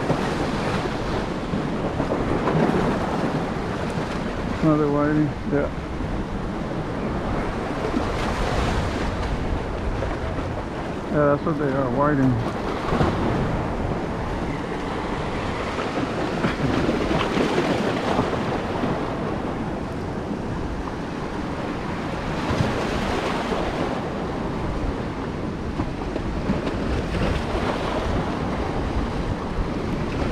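Surf washing along the shore with wind buffeting the microphone, a steady rushing noise throughout. A voice is heard briefly twice in the first half.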